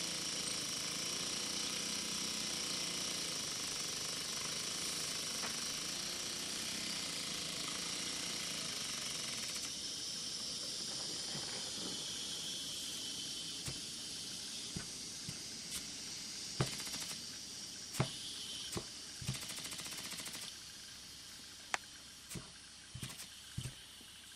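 Tiny butane-fired Philcraft V-twin marine steam engine running fast, with a steady hiss from its burner and steam. About ten seconds in the sound thins and slowly fades as the gas runs out, leaving scattered small clicks.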